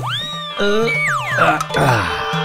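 Cartoon comedy sound effects over light background music: a whistle-like tone swoops up at the start and arches down, then a second one falls steeply about a second in.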